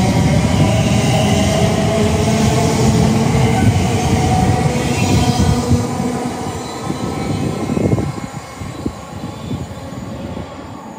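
Elizabeth line Class 345 electric multiple unit moving away from the platform, a steady electric hum over the rumble of its wheels on the rails. The sound fades as the train draws off, dropping away sharply about eight seconds in.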